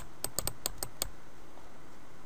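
Typing on a computer keyboard: a quick run of about six keystrokes in the first second, entering a new name, then it stops.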